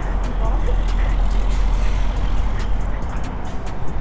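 Heavy road traffic passing close by, with a truck going past: a steady low rumble and tyre noise.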